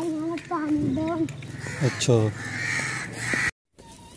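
Crows cawing: a few held calls in quick succession, then two calls that slide down in pitch. The sound cuts off abruptly near the end.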